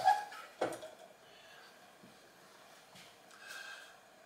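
Two brief knocks as a small compressor control box is handled on a table, then quiet room tone.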